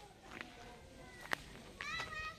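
Two sharp clicks about a second apart, then near the end a high-pitched, drawn-out animal call that falls slightly in pitch.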